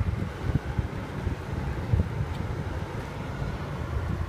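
Wind buffeting a phone's microphone: a low, uneven rumble that swells and drops in gusts.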